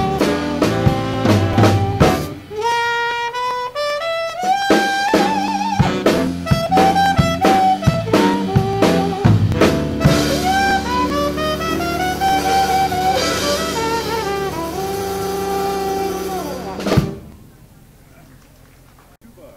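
Seven-piece jazz dance band (trumpet, trombone, two reeds, piano, bass and drums) playing the close of a swing number. The busy full ensemble is punctuated by drum hits, then from about ten seconds in the band holds a long final chord. A last hit near the end cuts it off.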